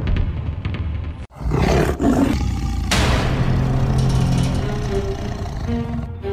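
A tiger's roar, used as a logo sound effect, sets in about a second and a half in over dramatic music.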